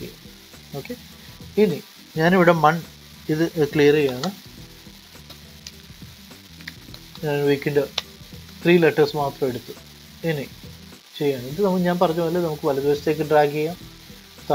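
A voice narrating in short phrases with pauses, over a steady low background hiss.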